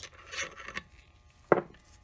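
Faint rubbing from transmission parts being handled, then one sharp knock about a second and a half in.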